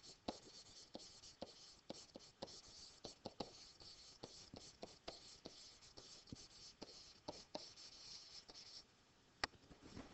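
Faint stylus writing, soft scratching and ticking strokes as handwriting goes onto a digital writing surface. It stops about nine seconds in and is followed by one sharp click.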